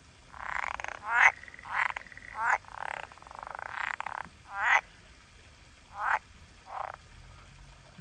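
Green water frogs croaking: about eight separate calls at a second or so apart, some quick rapidly pulsed croaks and some smoother, longer ones, each under a second. The calls stop in the last second.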